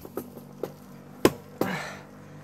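Bicycle gear shift: a few sharp clicks from the shifter and derailleur as the chain moves across the cassette, the loudest a little past halfway, followed by a short rasp.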